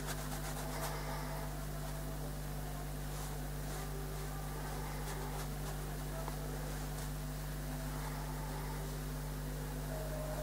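Steady low hum with a faint hiss, and a few faint soft strokes of a wet brush on watercolour paper in the first few seconds.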